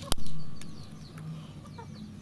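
Bypass pruning shears snipping once through a woody stem at the base of an ileng-ileng bonsai stock: a single sharp click just after the start.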